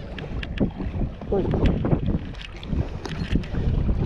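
Wind rumbling on the microphone aboard a small boat, with scattered short knocks and slaps from freshly caught fish flopping on the deck.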